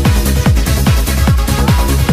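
Electronic dance music from a club DJ mix: a steady four-on-the-floor kick drum, a little over two beats a second, under sustained trance-style synth tones.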